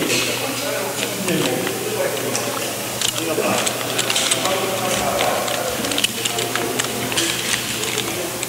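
Kernmantle rope being threaded and pulled through a metal descender, with a steady rustle of rope and harness against the microphone and scattered small clicks of carabiners and hardware.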